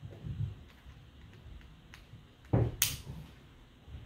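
Diamond painting tools handled on a tabletop: a few soft knocks, then a louder knock about two and a half seconds in, followed at once by a sharp plastic click.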